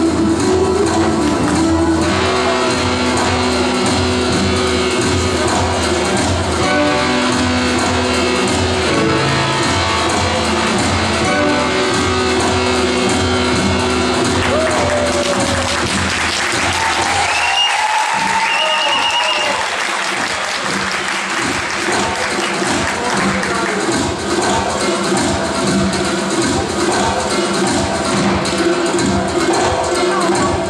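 Live Turkish folk-dance music for an Artvin-region dance, built on steady held tones. Audience applause breaks in a little past halfway while the music and a regular beat carry on.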